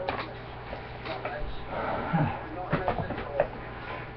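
Quiet handling noises: light rustling and a few soft clicks and knocks as plastic golf discs are moved and picked out.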